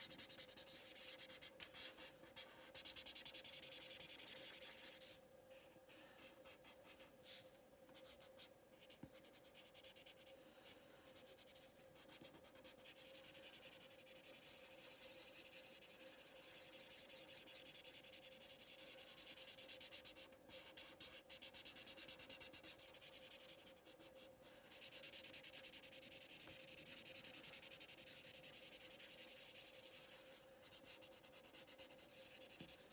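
Faint scratchy rubbing of a green felt-tip marker on paper as an area is coloured in, a little louder a few seconds in and again near the end.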